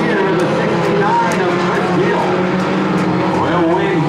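Engines of Hornet-class compact race cars running at speed around a dirt oval, steady throughout, with a person's voice talking over them.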